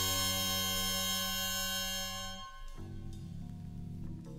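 Jazz-rock horn section of trumpets, trombones and woodwind holding a loud, bright chord over bass and drums. The chord fades out about two and a half seconds in, leaving quieter held notes.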